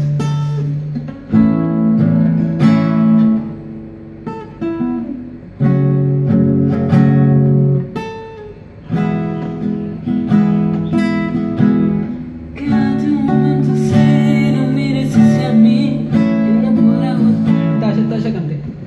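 Acoustic guitar strumming chords, with brief pauses about four and eight seconds in.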